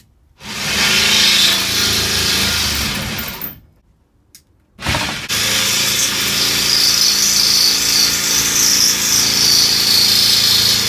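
Jigsaw cutting a steel bar in two runs. It saws for about three seconds, stops, then starts again about five seconds in and keeps going, with a high steady whine of blade on metal joining from about seven seconds. The blade is too short to go all the way across the metal.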